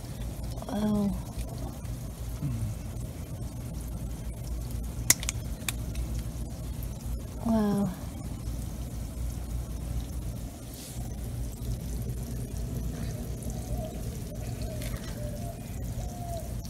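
Two short wordless utterances from a person's voice over a steady low rumble, with one sharp click about five seconds in.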